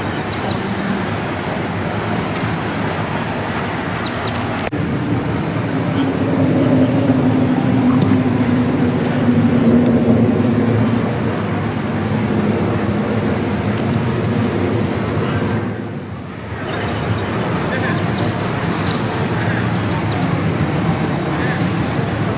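City street traffic noise, with a vehicle's engine hum swelling as it passes about six to eleven seconds in, and a brief lull a few seconds later.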